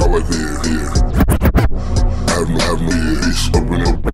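Chopped-and-screwed hip hop music: a slowed, pitched-down beat with steady heavy bass under it and drum hits, including a quick run of hits a little over a second in.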